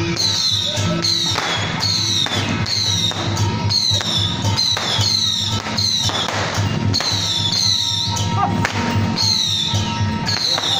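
Procession percussion music with a steady beat: a drum stroke and a high, fading metallic clash about every two-thirds of a second.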